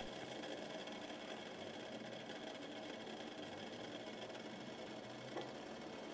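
Faint steady room noise with a low hum, and one light click near the end.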